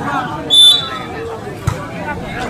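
A short, shrill referee's whistle blast about half a second in, the signal for the serve, then a single thump near the end over crowd chatter.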